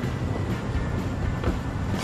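Steady outdoor background noise with a low, even hum and no distinct events.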